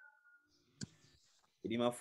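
A single sharp click a little under a second in, between stretches of near silence, followed by a voice beginning to speak near the end.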